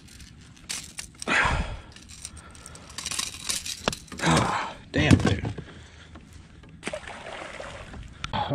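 Metal clinking and jangling of fishing pliers and a jerkbait's treble hooks as the lure is worked out of a pickerel's mouth, with a few scrapes and knocks.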